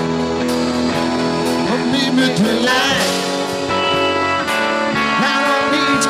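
A rock band playing live, guitar to the fore, in a stretch without singing.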